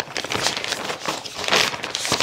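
Frosted plastic sealed bag crinkling and rustling as it is pulled open by hand, loudest about one and a half seconds in.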